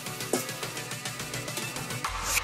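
Background music with a light, steady beat, and a sharp click about a third of a second in.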